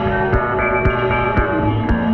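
Experimental instrumental music: layered, sustained humming tones that shift in pitch, over a steady low pulse about twice a second.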